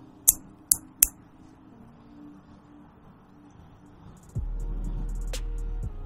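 Vice Hardware M1 all-titanium pry bar giving three sharp metallic clinks in the first second, about a third of a second apart. About two-thirds of the way through, background music with a steady low tone comes in.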